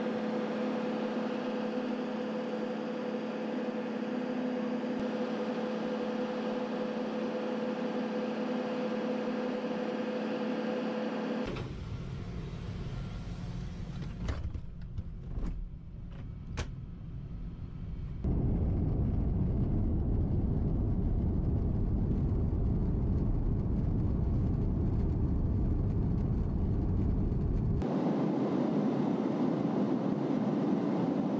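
Aircraft noise across several shots of an RAF Voyager tanker. First a steady hum with two held tones beside the parked aircraft. From about a third of the way in comes the low rumble of the cabin in flight, with a few clicks and knocks, and it grows louder a little past halfway. Near the end the sound changes again to a more hissing air noise.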